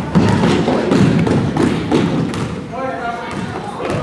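A string of thuds from balls hitting the floor in a large hall, over the chatter of children's voices.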